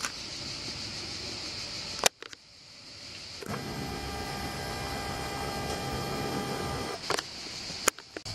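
A small camera zoom motor whining steadily for about three and a half seconds, starting a little past the middle. A sharp click comes about two seconds in and further clicks near the end, over a faint high insect buzz at the start.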